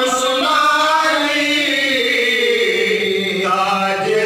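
Men's voices chanting a slow devotional melody in unison, with long drawn-out notes, one sliding gradually lower in the middle.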